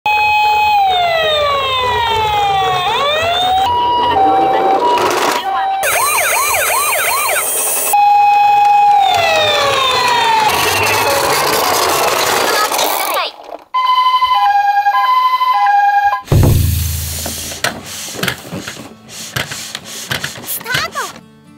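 Toy ambulance's electronic siren cycling through patterns: a falling wail, a two-note hi-lo tone, a fast yelp, another falling wail, then the hi-lo tone again. Near the end the siren stops and a low thud is followed by a fading rush of noise.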